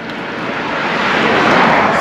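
A rushing noise with no clear engine note, growing steadily louder over two seconds: a vehicle approaching.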